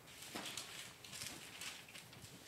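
Faint rustle of thin Bible pages being turned by hand, a few short swishes.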